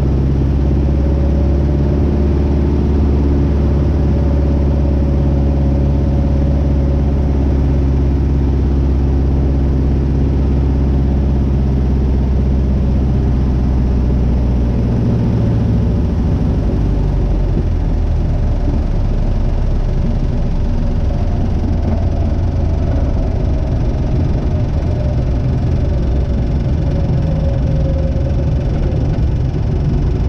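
The 180 hp Lycoming O-360 four-cylinder engine and propeller of a Vans RV-6A, heard in the cockpit and running steadily on final approach. About halfway through, the engine note drops and turns rougher as the plane rolls out along the runway at low power after touchdown.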